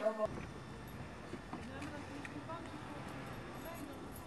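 Indoor speech cut off abruptly by an edit about a quarter-second in, then faint steady outdoor background noise with faint voices and a few light footsteps on brick paving.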